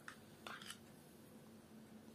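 Near silence, with a faint brief scrape about half a second in as a spoon scoops thick yogurt out of a ceramic bowl.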